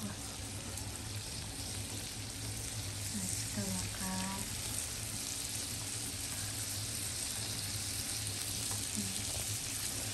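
Large prawns and shellfish sizzling in butter on a tabletop grill plate: a steady frying hiss.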